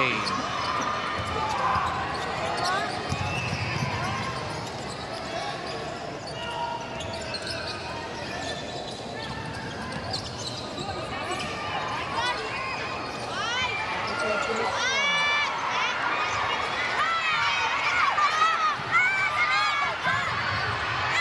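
A basketball being dribbled on a hardwood gym floor during live play, under a steady murmur of crowd chatter. Many short, high sneaker squeaks join in over the second half.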